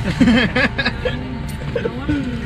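Voices over background music, with a steady low rumble underneath.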